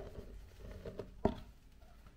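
Flour pouring into a stainless steel mixing bowl with a soft patter, with a sharp knock right at the start and another a little over a second in.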